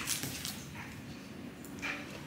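Faint sounds of dogs moving about on a padded dog bed, with a soft dog whimper and a short, sharper sound near the end.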